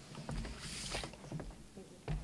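Papers rustling and light knocks at a wooden lectern, with a short hissy rustle a little before the middle.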